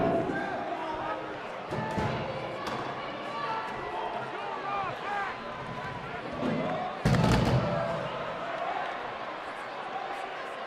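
Scuffle among metal equipment road cases, with shouting voices and repeated heavy slams and thuds. The loudest slam comes about seven seconds in.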